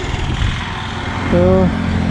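Motorcycle underway on the road: a steady low engine rumble mixed with wind and road noise.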